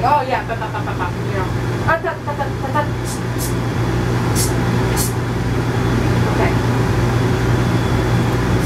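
Grooming shears snipping the dog's hair a few times, short sharp clicks between about three and five seconds in, over a steady low machine hum.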